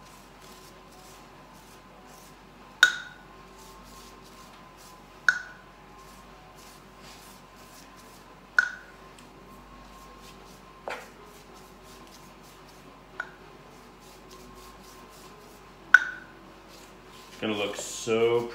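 A pastry brush clinking against a small ceramic bowl of egg white as it is dipped and brushed across cookie dough in a baking pan: six sharp clinks a few seconds apart, each ringing briefly.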